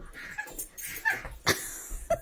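American pit bull terrier whining in a few short, high-pitched whimpers, with a sharp click about a second and a half in.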